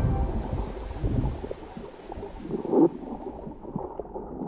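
Muffled underwater rumble of water moving against a camera in its waterproof housing, heavier in the first second or so. There is a short gurgle of bubbles a little before three seconds in.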